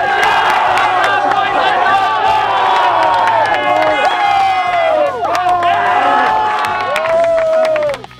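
A group of teenage boys shouting and cheering together, celebrating a win, with scattered sharp claps from high-fives.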